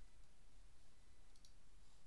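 Quiet room tone with one soft computer mouse click about a second and a half in.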